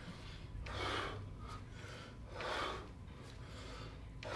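A man's forceful breaths out, faint, two of them about a second and a half apart, one with each kettlebell swing.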